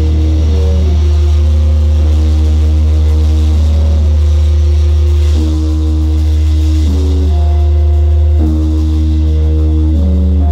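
Live band holding a slow drone passage: a loud, steady low bass drone under sustained chords that shift to new notes every second or two, with no drums.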